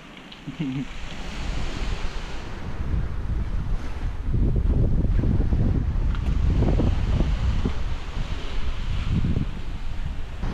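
Wind buffeting a small GoPro's microphone, a gusting low rumble that builds from about two seconds in, over the wash of surf on a pebble beach.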